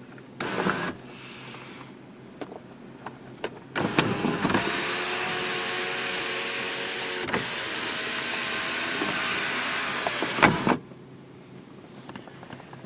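Cadillac CTS power sunroof motor running steadily for about seven seconds as it slides the glass panel open, then cutting off abruptly with a clunk. There is a brief burst of noise about half a second in.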